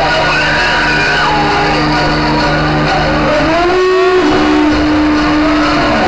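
Loud electronic dance music over a club sound system, in a breakdown of sustained synth tones. About halfway through, several tones sweep and bend in pitch.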